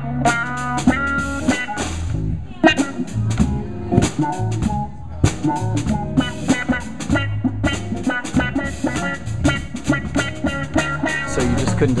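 Eight-string guitar played live in a jazz-funk groove with a drum kit: low, held bass notes under higher picked chord and melody notes, over a steady beat of drum strokes.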